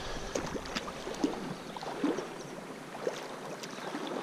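Shallow river water running, with a few short splashes and ticks while a small hooked rainbow trout is played in close to the bank.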